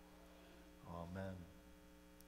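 Steady electrical mains hum, with a brief soft voice about a second in.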